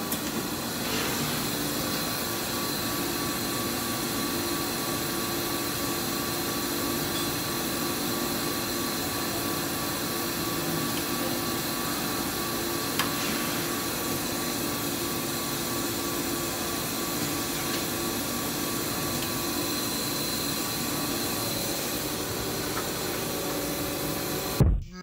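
Steady hum and hiss of running surface-mount PCB assembly machinery, with a few constant tones held over the noise and a single faint click about halfway.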